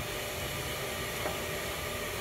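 Steady, even workshop background noise, a constant hiss and hum with no distinct knocks or clicks.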